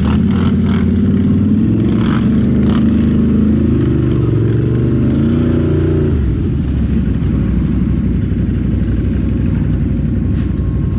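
ATV engine running close to the microphone, revving up and down a few times, then settling to a lower, steadier idle about six seconds in.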